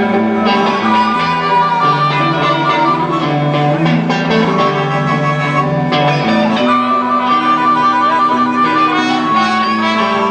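Blues band playing live, an instrumental passage with no singing: guitar over a bass line that steps from note to note, with long held high notes above.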